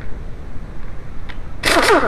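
A short burst from an impact wrench on a 17 mm wheel bolt near the end, its pitch falling as the motor spins down.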